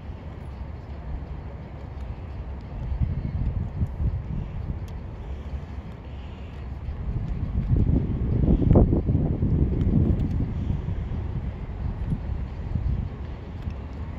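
Wind buffeting the microphone: a low, gusty rumble that swells to its loudest about eight to ten seconds in.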